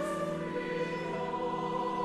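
Choir singing with string accompaniment, holding long, sustained chords; the chord shifts about the start.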